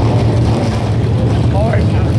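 Steady low rumble of racetrack background noise on the camcorder microphone, with a brief voice late on.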